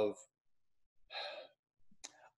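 A person's short audible breath, a soft sigh lasting about half a second, about a second in.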